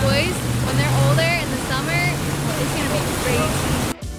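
Inboard engine of a towing wake boat running steadily under way, a low hum under a loud rush of wind and water, with faint voices in the background. The sound cuts off abruptly near the end.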